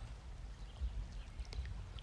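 Quiet background with a steady low hum, in a gap between words of narration.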